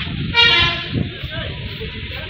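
A vehicle horn toots once, briefly, about a third of a second in, over the general noise of a busy street.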